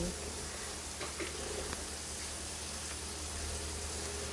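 Chicken tails and skin sizzling steadily as they fry over low heat in their own rendered fat in a nonstick pan, the fat now fully rendered out. A few light taps of a spatula stirring come between one and two seconds in.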